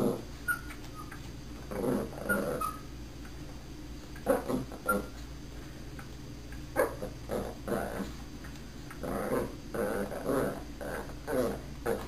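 Small puppies making short whines and little yips in scattered bursts, about a dozen over the stretch, as they beg for a treat while being taught to speak on command.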